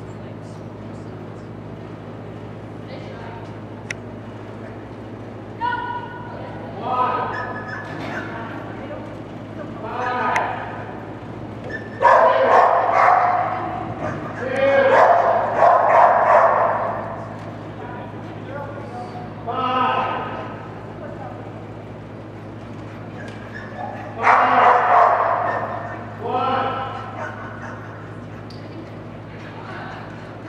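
Dogs barking and yipping in a large indoor hall, in repeated clusters of short calls that are loudest a little under halfway through and again near the end, over a steady low hum.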